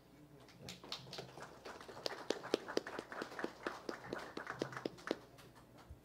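A quick, irregular run of sharp taps, about four a second, lasting roughly four and a half seconds and stopping a little before the end.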